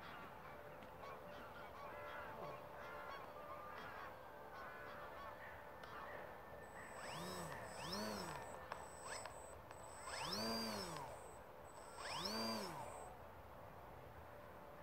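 Model aerobatic airplane's motor faintly throttling up and back down in four short bursts during the second half, each a rising then falling pitch.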